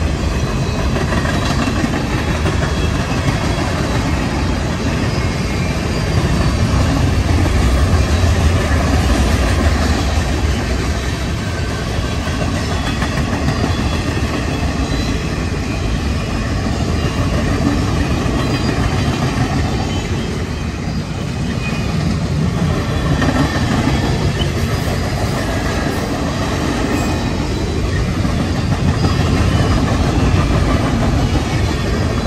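Freight train cars, boxcars and covered hoppers, rolling past close by: a loud, steady rumble of steel wheels on the rails.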